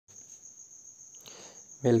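A faint, steady high-pitched tone sounds throughout over a low background hiss, and a voice starts speaking near the end.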